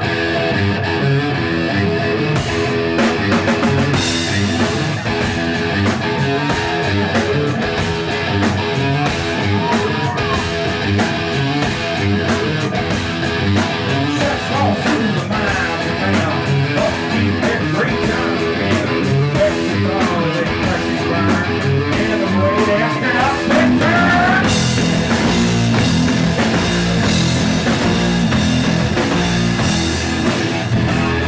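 A live rock band playing loud: electric guitar, bass and drum kit. The guitar plays alone at first, and the drums and cymbals come in about two and a half seconds in.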